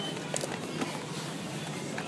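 Background music over the steady hubbub of a supermarket aisle, with a few light clicks and rustles.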